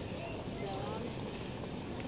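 Faint, distant voices speaking over a steady bed of wind and outdoor noise.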